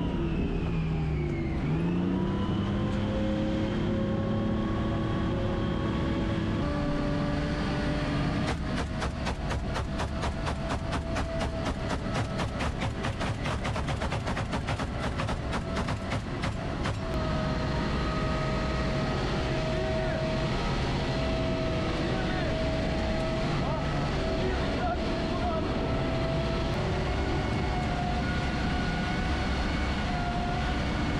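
A military vehicle's engine runs loudly under load. Its pitch drops and climbs back in the first couple of seconds, then holds steady. From about 8 to 17 seconds a rapid, even clatter of about five sharp knocks a second runs over the engine and then stops abruptly.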